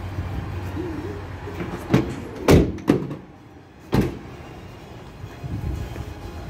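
Camper van doors being shut: a handful of thuds and clunks, the loudest about two and a half seconds in and a last one about four seconds in.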